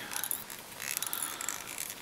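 Fly-tying thread being wrapped onto a hook and drawn off the bobbin, giving an irregular run of small, high, dry clicks and ticks.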